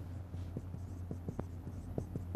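Marker pen writing on a whiteboard: a string of short, irregular taps and strokes over a steady low hum.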